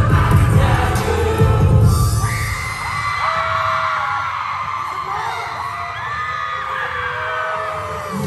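Loud dance-pop music with a heavy bass beat, heard from among a concert audience. The bass cuts out about two seconds in, leaving many overlapping high screams from the crowd over a quieter music bed.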